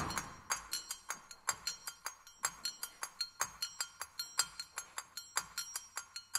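Small hand-held brass percussion struck over and over in an uneven rhythm, about three strikes a second, each strike ringing with bright high overtones.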